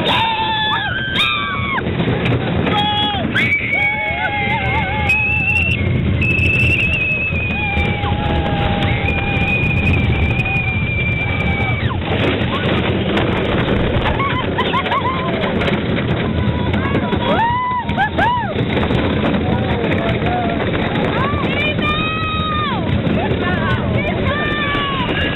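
Roller coaster riders whooping and yelling in long, high-pitched calls that rise and fall, over the steady rumble of a wooden coaster train and the wind.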